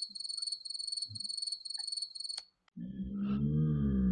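Cricket chirping sound effect used as the "crickets" gag for an awkward silence: a high trilling chirp repeating about twice a second, which cuts off suddenly about two and a half seconds in. A low sustained tone begins near the end.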